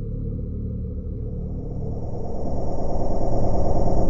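Low, steady rumbling drone with a few held tones, faint high tones joining about a second in, swelling louder over the last two seconds.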